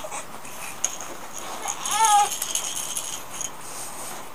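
A short, high-pitched animal call that rises and falls in pitch, about two seconds in, with a few light clicks around it.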